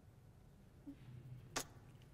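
Near-silent room tone with a faint low hum, broken by one short sharp click about one and a half seconds in.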